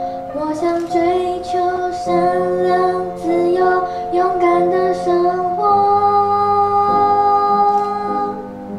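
A teenage girl singing a melody over backing music, ending on one long held note over the last two seconds or so.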